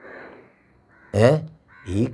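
A man's voice: a faint breath, then about a second in a loud, rasping drawn-out vowel, and a shorter one near the end as he starts speaking again.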